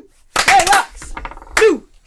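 A small group laughing in short loud bursts, about three of them, with quieter gaps between.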